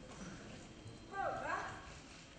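An actor's voice on stage: one short, high-pitched vocal utterance with a sharply sliding pitch about a second in, over faint stage room noise.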